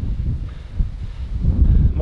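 Strong wind buffeting the microphone: a loud, uneven low rumble that rises and falls with the gusts.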